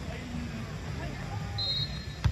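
Open-air ambience of a beach volleyball rally: faint, scattered voices of players over a steady low rumble of wind or surf. A brief high tone sounds near the end.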